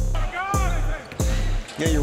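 Background music with a heavy, booming bass beat and a pitched line gliding up and down over it.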